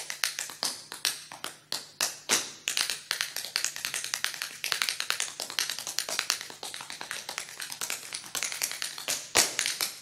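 Tap dancing: quick, uneven runs of sharp taps and stamps of shoes on the floor, with a few louder strikes near the end.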